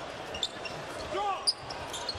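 Basketball game on a hardwood court in an arena: a steady crowd murmur with a few short high squeaks and clicks from shoes and the ball on the floor.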